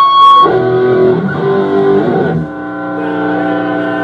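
Amplified electric guitar ringing out in held notes with no drums, the notes changing about half a second in and again around two and a half seconds.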